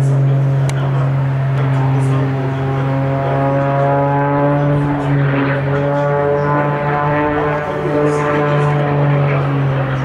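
Propeller engine of an aerobatic biplane running during a smoke-trailing display, its pitch rising slowly over several seconds in the middle and easing near the end, over a steady low drone.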